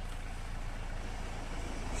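Steady low background rumble with no distinct sounds standing out.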